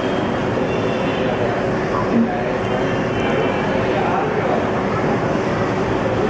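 A WDM-3A diesel locomotive's ALCO engine running steadily as the loco approaches slowly, mixed with background voices of station chatter.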